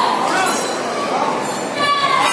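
Hanging brass temple bell rung by hand, its ringing tones hanging in the air, with a fresh strike near the end, over the chatter of a crowd in an echoing hall.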